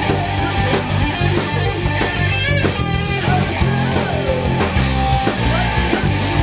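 Rock band playing live: distorted electric guitar, electric bass and drum kit together, loud and steady, with a wavering high note about halfway through.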